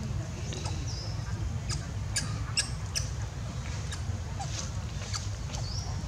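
Outdoor ambience: a steady low rumble, with several brief high chirps and sharp clicks scattered through it, and one short high squeak falling about a second in and another rising near the end.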